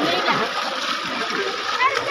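Water splashing and churning steadily in a small concrete farm water tank, with boys' voices calling out over it.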